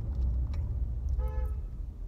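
A short single car-horn toot, one steady pitch, about a second in, over a low steady rumble that fades toward the end, heard from inside a car.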